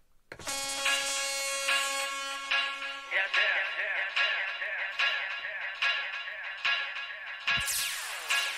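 An old-school dubstep track starting about half a second in: a held synth chord, then from about three seconds a rhythmic electronic pattern with evenly spaced pulses a little more than once a second.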